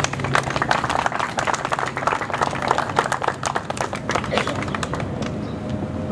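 Audience applauding, the clapping thinning out after about four seconds.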